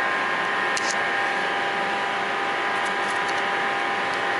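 Steady machinery hum holding several constant tones, with a few light clicks from the hose-binding wire and coupling being handled, the first about a second in.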